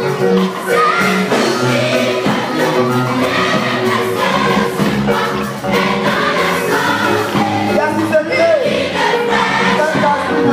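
A choir of girls singing a gospel song together in chorus, loud and steady, over an even rhythmic beat.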